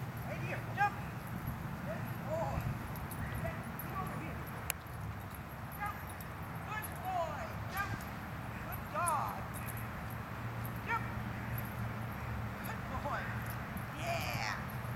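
A dog barking and yipping a few times in short calls, the clearest about nine seconds in, over a steady low hum.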